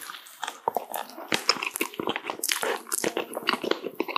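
A soft, powdered green tea mochi being pulled apart close to the microphone: a dense run of small sticky crackles and squishes as the chewy rice-cake skin stretches and tears.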